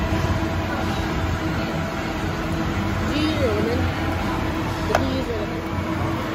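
Restaurant ambience: indistinct background voices over a steady low rumble and hum, with one sharp click about five seconds in.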